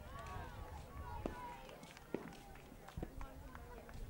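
Players' voices calling across a field hockey pitch, with three sharp cracks about a second apart, typical of hockey sticks striking the ball; the first two are the loudest.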